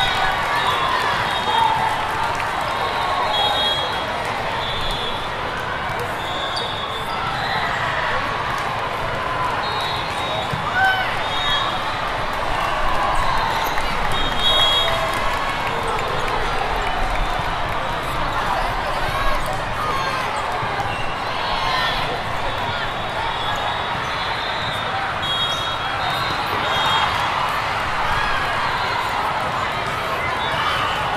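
Hubbub of a busy multi-court volleyball hall: many overlapping voices of players and spectators, with volleyballs being hit and bouncing, and short high-pitched squeaks now and then.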